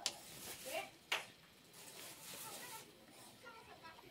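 Two sharp clicks about a second apart as a small steel carving knife blade is handled at a bench grinder, under faint, low speech.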